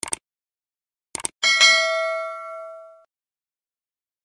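Subscribe-button animation sound effect: short mouse clicks at the start and again about a second in, then a notification-bell ding that rings out and fades over about a second and a half.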